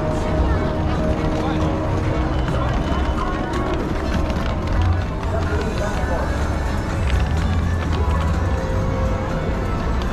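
Busy pedestrian street ambience: passers-by's voices and footsteps on paving, with music playing from shop loudspeakers.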